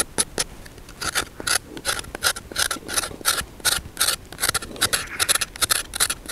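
A small knife peeling a raw potato, its blade shaving off the skin in quick repeated scraping strokes, about four a second, with a brief pause before the first second.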